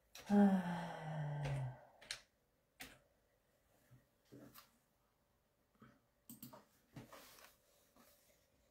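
A woman's drawn-out vocal sound, falling in pitch, lasts about a second and a half at the start. It is followed by a handful of faint, scattered light clicks and taps as a sheet of white card is handled on a wooden table.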